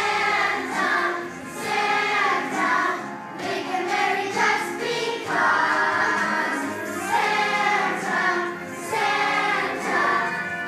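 A group of children singing a song together in phrases of a second or two, with short breaks between them.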